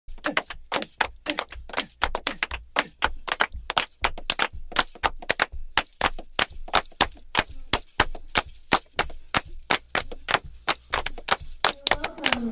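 Fast percussion with no melody: sharp drum strikes, several a second, in a driving, uneven rhythm.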